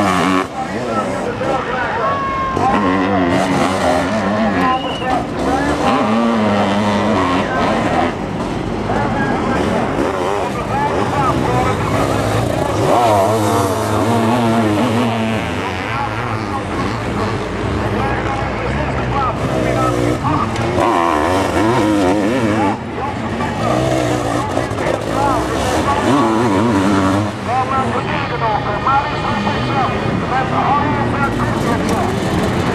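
Sidecar motocross outfits racing on a dirt track, their engines revving up and down as they corner and accelerate past.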